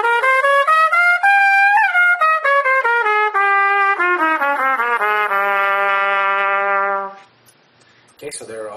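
Trumpet playing the A Locrian mode (Bb major key signature) over two octaves in quick separate notes. It climbs to the top A about a second and a half in, steps back down, and ends on a long held low A that stops about seven seconds in.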